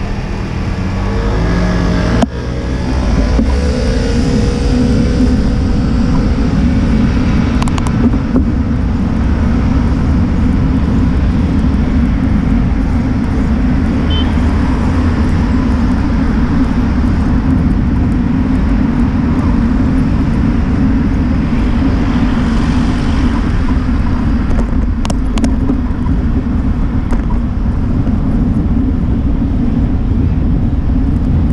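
Steady low rumble of wind and road noise on a bicycle-mounted camera's microphone while riding through city traffic, with cars around. There is a sharp knock about two seconds in.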